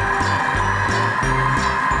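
Countertop food processor's motor running with a steady whir, under background music.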